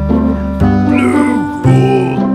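Background music with a steady bass line, over which a latex balloon squeaks in short rising and falling squeals as gloved hands rub and squeeze it, about a second in.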